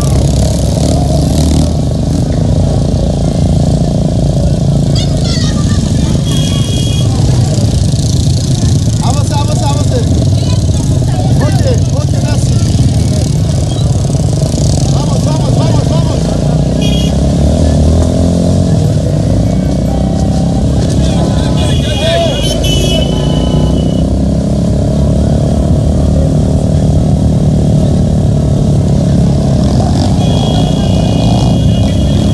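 Motorcycle engine running steadily as it rides along, heard from on the bike, with people's voices around it and a few short high tones now and then.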